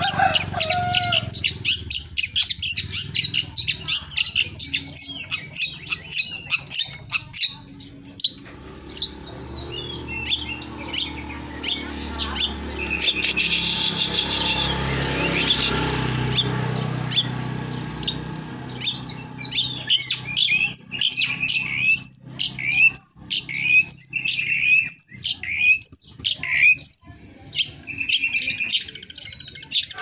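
Caged songbird singing a fast, varied run of chirps and whistles, with a rush of background noise swelling and fading midway.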